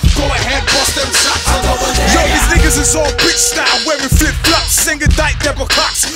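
Hip hop track: a rapper delivering fast verses over a heavy bass beat.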